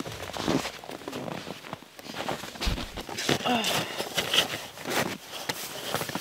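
Snowshoe bindings being handled and strapped by hand: scattered rustling and small clicks of straps and buckles, with boots shifting on snow.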